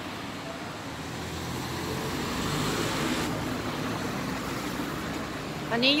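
Road traffic: a car passing close by, its tyre and engine noise swelling to its loudest about three seconds in and then fading.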